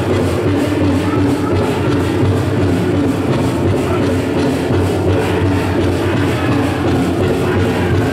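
Powwow drum group singing a song over a steady drumbeat, with the metal cones on the dancers' jingle dresses rattling.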